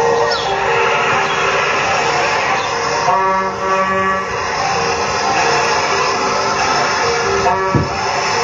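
Cartoon soundtrack music with a melody of held notes, playing through a laptop's speakers.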